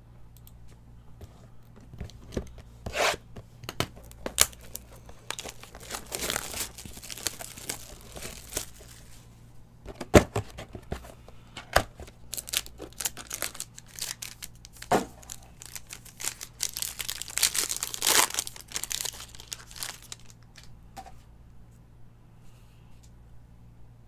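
Foil wrapper of a 2020 Panini Elements football card pack being torn open and crinkled by hand, in several bursts of crackling with a few sharp clicks from the cards being handled.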